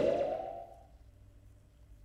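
The end of a TV show's logo transition sound effect: a tone that rises and fades out within the first second, followed by near silence.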